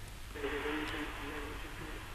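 A man's voice speaking faintly over a telephone line, thin and narrow-sounding, for about a second and a half.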